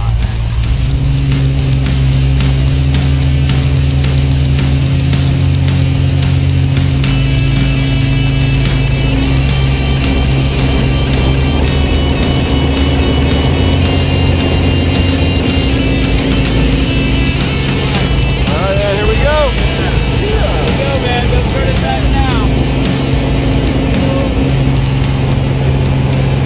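Single-engine light aircraft's piston engine and propeller droning steadily inside the cabin through takeoff and climb-out, with music playing over it.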